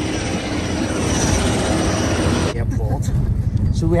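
Airport apron noise: a steady jet-engine hiss with a thin high whine. About two and a half seconds in, it cuts off abruptly and gives way to the low rumble of a car cabin on the move.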